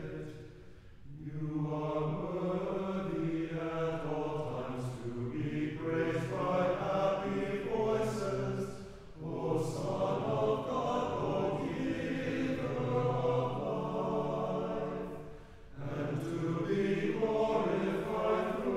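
Church choir singing a chant in sustained chords, in phrases with short breaks between them about a second in, near the middle, and a couple of seconds before the end.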